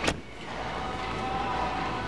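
A steady machine hum with a faint, even whine that grows slightly louder, after a brief sharp sound at the very start.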